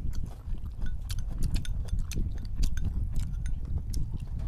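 Close-miked eating: chewing, with many small irregular clicks of mouths and chopsticks on bowls, over a steady low rumble.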